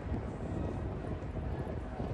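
Steady low rumble of outdoor city ambience, with no distinct event standing out.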